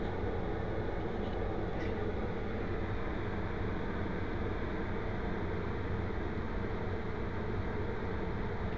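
Steady, even hum and hiss of a room air-conditioning unit running, with no change in level.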